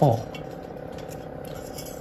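Faint clinks and scrapes of thin wire being threaded through a drainage hole of a terracotta pot, over a steady low hum.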